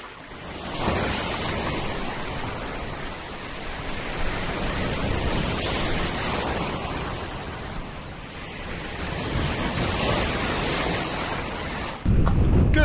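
Small waves breaking and washing in shallow surf, the sound swelling and easing over several seconds.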